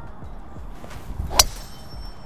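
Golf driver striking a teed ball on a tee shot: a single sharp crack about one and a half seconds in.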